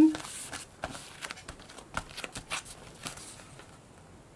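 Hands pressing and rubbing a foam-core stamp down onto denim: faint, scattered rustles and light taps, fading out toward the end.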